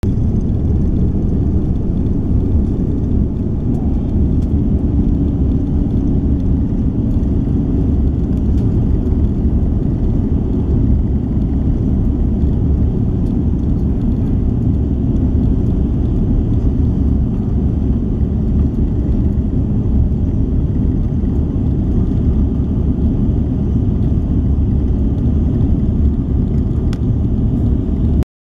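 Passenger jet cabin noise during takeoff and initial climb, heard from inside the cabin: a loud, steady low rumble of the engines and rushing air that holds even throughout.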